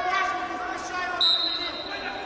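Referee's whistle blown once, a single steady high-pitched blast starting just past halfway and still sounding at the end, signalling the restart of the wrestling bout. Voices murmur in the hall underneath.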